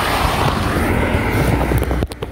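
Loud steady rush of a moving vehicle's road and wind noise, with wind buffeting the phone's microphone; it drops off suddenly at the end.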